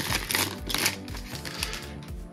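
Foil wrapper of a trading-card pack being peeled open by hand, a quick run of sharp crackles and crinkles in the first second that eases off, over soft background music.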